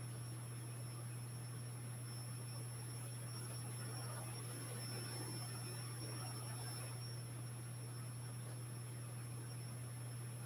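Steady low electrical hum with a faint, thin high-pitched whine above it, unchanging throughout.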